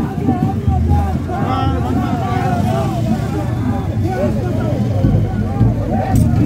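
A large crowd on the move, with many voices talking and shouting over one another at once.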